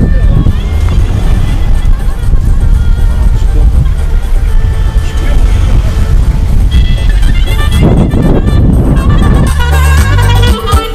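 A car driving through town streets, its engine and road noise mixed with voices and background music. Near the end the music comes up strongly.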